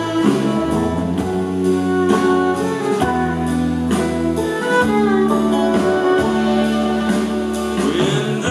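Live bluegrass band playing a slow tune on acoustic guitars, banjo, mandolin, fiddle and steel guitar, with long held chords that change every second or two.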